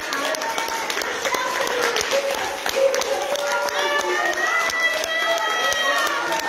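A church congregation clapping, with voices calling out over the claps. One voice is held long near the end.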